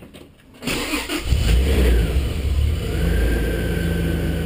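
Car engine started: the starter cranks for about half a second, the engine catches, revs briefly, then settles into a steady idle.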